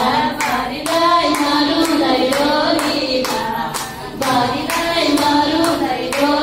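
A group of women singing a Nepali teej folk song together, with hand-clapping keeping a steady beat about twice a second.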